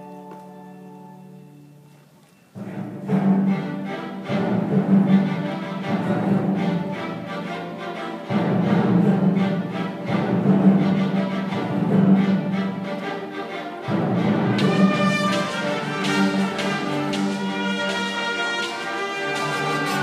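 Live orchestra, strings to the fore. A soft held chord dies away, then about two and a half seconds in the full orchestra comes in loud with a strong rhythmic figure, surging again near the middle and about two-thirds through.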